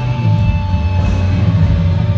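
Rock band playing live: electric guitars, bass and drum kit, loud and steady.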